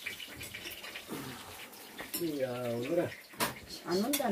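Meat sizzling faintly on a griddle over a portable gas stove, with a few light clicks. A short voiced sound from a person past the middle.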